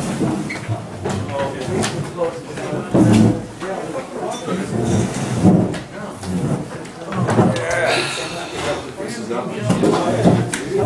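Indistinct conversation: several people talking in a room, none of it clear enough to make out.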